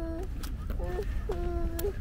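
A toddler's voice making short, level-pitched vocal sounds, three in a row with the last one longest, over a low wind rumble on the microphone.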